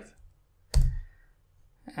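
A single sharp click with a low thump, about three-quarters of a second in, from a computer mouse button being pressed.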